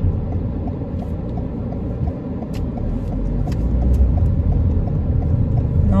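Inside a car's cabin while it drives in to park: a steady low rumble of road and engine noise, with a few faint clicks.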